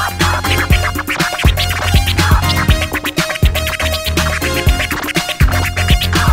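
Vinyl record being scratched by hand on a turntable over an 80s Miami bass beat, with a heavy deep bass and sharp, regular drum hits running under the cuts.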